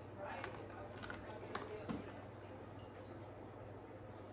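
A few faint knocks and taps, about half a second to two seconds in, as a plastic bucket holding a hand-casting mould is tipped and handled over a plastic bowl, over a steady low hum.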